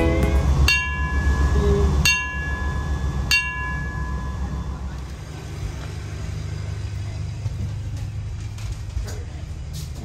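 Brass ship's bell struck three times by its lanyard, about a second and a third apart, each strike ringing out and fading, sounding the wake-up call on the dive boat. A low steady hum runs underneath, and faint knocking on a cabin door comes near the end.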